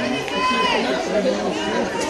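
Overlapping, indistinct chatter of several spectators' voices near the microphone.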